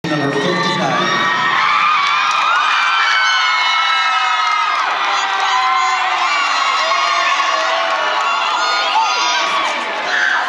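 Large crowd in an arena cheering, with many high voices shouting and screaming at once in a steady, loud din.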